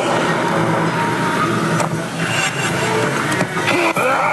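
Loud, steady din of a pachinko and pachislot parlour: machine music and electronic sound effects over a constant roar, with a few sharp clicks that fit reel-stop buttons being pressed.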